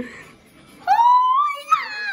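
A short knock, then about a second in a young girl gives one drawn-out, high-pitched yell that rises in pitch and holds for about a second.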